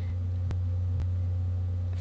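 A steady low background hum, with two faint clicks, about half a second and a second in.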